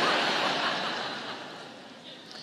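A large audience laughing together, loudest at the start and dying away over two seconds.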